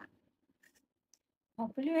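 A pause between sung lines, almost silent, then singing resumes about a second and a half in with a held note.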